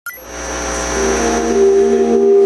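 Electronic intro swell: a sustained synth chord under a hiss, growing steadily louder after a short click at the start.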